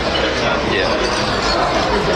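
Busy restaurant dining-room hubbub: steady background chatter and room noise, with a man briefly saying "yeah".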